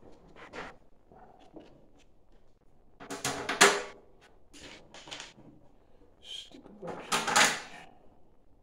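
Short bursts of metal handling noise: screws rattling and the metal stock-pot lids being shifted while screws are set around the rim. The loudest clatters come a little after three seconds in and again about seven seconds in.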